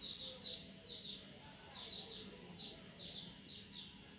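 Faint, rapid chirping of a small bird, short calls repeated several times a second, each dipping slightly in pitch, with a faint low hum underneath.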